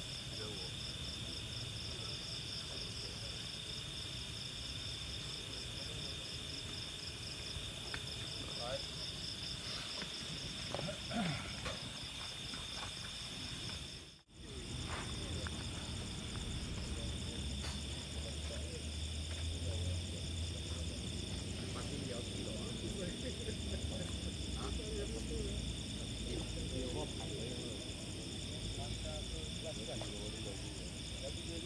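Steady chorus of night insects: high, continuous trilling with a pulsing upper band, over a low background rumble. The sound drops out for a moment about 14 seconds in.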